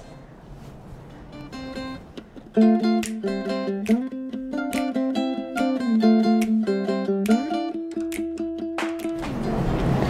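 Background music: a light tune on a plucked string instrument such as a ukulele or guitar, faint at first and coming in fully about two and a half seconds in.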